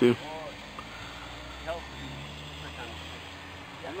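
RC hexcopter's electric motors and propellers buzzing steadily in flight, with faint voices under it.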